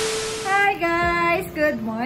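A short burst of TV-static hiss from a glitch transition effect, lasting under a second, then a high-pitched voice singing.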